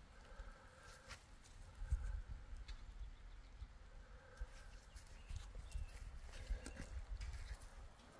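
Faint outdoor sound: a low wind rumble on the microphone with scattered soft footsteps and handling clicks.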